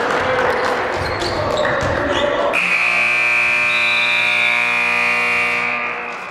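Gym crowd noise and shouting, then about two and a half seconds in the scoreboard buzzer sounds one long steady tone for a little over three seconds, cutting off near the end: the horn marking the game clock running out at the end of the period.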